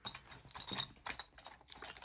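Small plastic makeup items (mascara tube, eyeliner and lip-liner pencils) clicking and rattling against each other as they are handled and put back into a cosmetic case: a run of light, irregular clicks.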